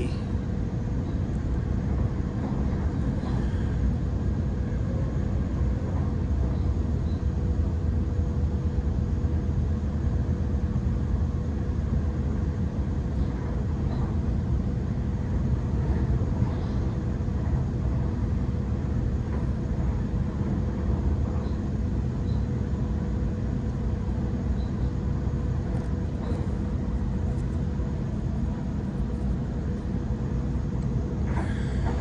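Interior cabin noise of a Waratah double-deck electric train running along the line: a steady low rumble of wheels on track with a thin steady hum over it.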